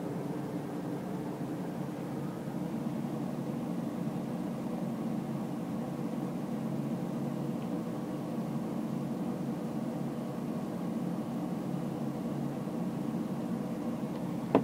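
Steady low hum with a hiss, even throughout and with no separate clicks.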